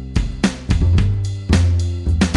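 GarageBand's smart drums playing back a steady rock beat on the live rock kit, with upright bass notes played live on a MIDI keyboard. The low bass notes hold and change pitch a few times under the beat.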